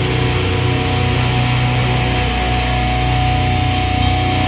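A live hardcore band's distorted electric guitars and bass holding a chord that rings out steadily, with a thin sustained tone over it.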